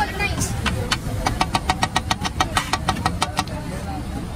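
Metal spatula striking a large flat iron griddle (tawa) in quick, even clacks, about seven a second for some two seconds from about a second in, as it chops and mixes a chickpea daal. Beneath it is a steady low rumble of traffic.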